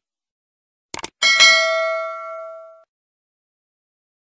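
A quick double mouse click about a second in, then a bell-like notification ding that rings out and fades over about a second and a half. These are the sound effects of a subscribe-button and notification-bell animation.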